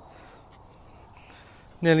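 Steady, high-pitched insect chorus outdoors on a summer's day, an even chirring hiss with no distinct strikes or footsteps.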